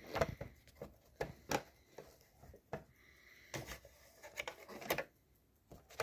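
Hands positioning a piece of fabric under the presser foot of a sewing machine: scattered light clicks, taps and rustles at an irregular pace, with the machine not running.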